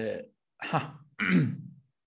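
A man's voice: a drawn-out word trails off, then two short throaty vocal sounds follow, about half a second and a second and a quarter in, like him clearing his throat.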